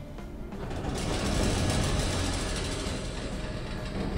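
Editing sound effect: a noisy whoosh that swells from about a second in and slowly fades, marking a scene transition, with background music faintly underneath.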